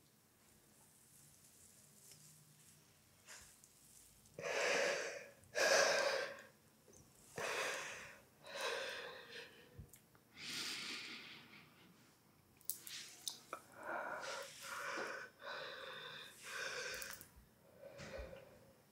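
A woman breathing heavily and gasping in distress, about a dozen ragged breaths starting about four seconds in.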